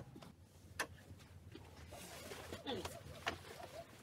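Faint knocks and clicks of someone moving about and handling clothes in a small quiet room, with a short run of low cooing sounds that fall in pitch a little after two seconds in.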